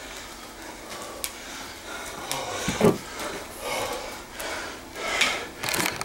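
Handling noise of a camera being picked up and moved: rubbing and knocking that builds in the last second or so. Before it come scattered rustles, a sharp click about a second in and a thump near the middle.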